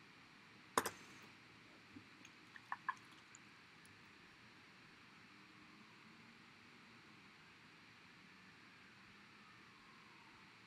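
Near silence: quiet room tone, with one sharp click a little under a second in and a few faint ticks between about two and three seconds in.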